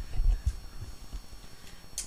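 Microphone handling noise: a few heavy low thumps in the first half-second, then two or three lighter bumps and a brief click near the end, as a lectern microphone is moved or adjusted.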